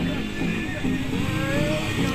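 Motorcycle engines running at low revs as the bikes creep forward at walking pace, mixed with crowd voices and music.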